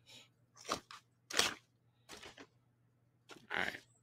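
Paper takeout bag crinkling as its folded top is pulled open, in a few short crackles with the loudest about a second and a half in.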